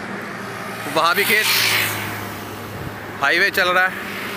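A road vehicle passing by on the highway: its tyre and engine noise swells about a second in and fades away, over a steady low hum.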